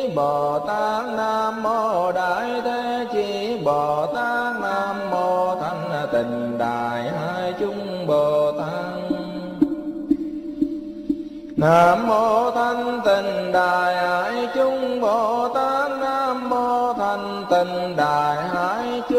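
A Buddhist mantra chanted in a flowing melody to a musical backing, over steady low drone tones. About nine and a half seconds in, the melodic voice drops out, leaving only the drone. It comes back abruptly about two seconds later.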